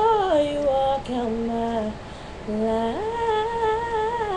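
A young woman singing alone with no accompaniment: long held, wavering notes, sliding down to a low held note, then a quick leap up to a higher sustained note about three seconds in.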